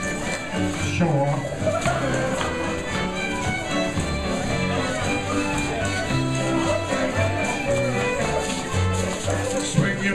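Live contra dance band playing a fiddle tune: fiddles carry the melody over guitar and keyboard accompaniment with a moving bass line.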